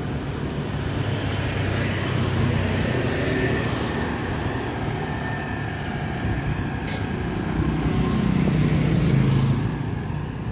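Road traffic: motor scooters and cars running along the street close by, the engine noise swelling as they pass, loudest about eight to nine seconds in. A single short click sounds about seven seconds in.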